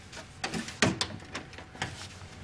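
A wooden door being handled and closed: a few short clicks and knocks from the door and its latch, the loudest a little under a second in.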